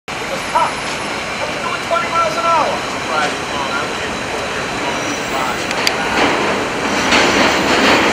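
City street noise: a steady rush of traffic, with short bits of people's voices over it. The noise grows louder over the last couple of seconds.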